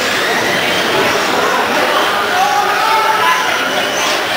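Background voices and chatter echoing in a large indoor hall over a steady din, with a voice briefly audible a little past the middle.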